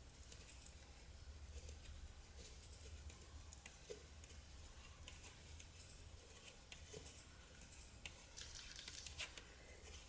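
Near silence, with faint scattered clicks and rustling of metal knitting needles and yarn as stitches are purled by hand.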